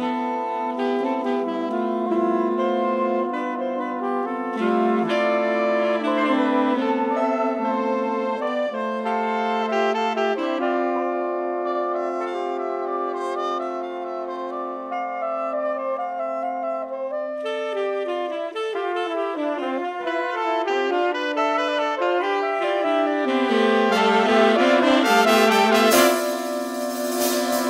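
Instrumental ensemble music led by brass and saxophones, several lines holding and moving through layered chords. It thins to a few held notes in the middle and grows fuller and louder near the end.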